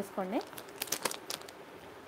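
Jewellery packaging crinkling as it is handled, with a few sharp crackles about a second in.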